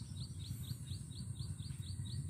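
Quiet outdoor field ambience: a rapid, evenly spaced series of short high chirps, about five a second, over a steady high hiss and a low rumble.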